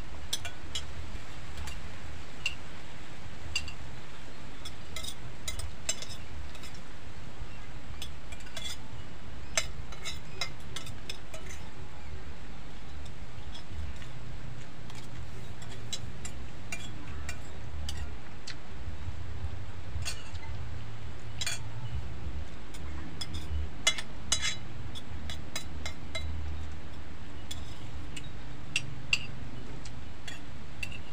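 Metal spoons clinking and scraping against plates as two people eat, in scattered, irregular taps, over a steady low rumble.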